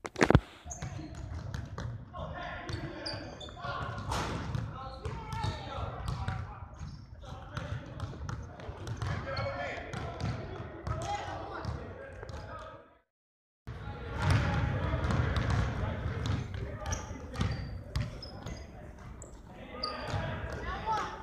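Basketballs bouncing on a gym floor among indistinct voices in a large echoing gym, with a sharp knock right at the start. The sound drops out completely for about half a second around 13 seconds in.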